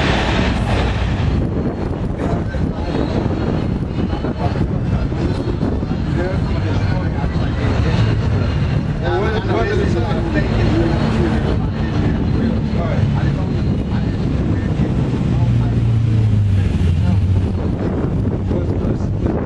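Steady city street traffic noise with wind on the microphone, faint indistinct talk and a low engine hum that swells near the end.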